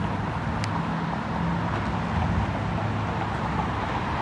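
Downtown street ambience: a steady low hum, like traffic or an idling engine, over general traffic noise, with a single sharp click about half a second in.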